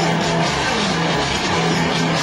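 Rock music with electric guitar, playing at a steady volume with a regular beat.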